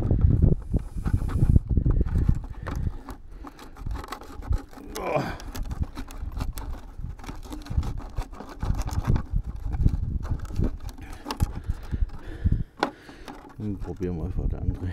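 Close handling noise from the RC truck being worked on by hand: a string of clicks, knocks and rustles right at the microphone over a low rumble, with a short gliding tone about five seconds in.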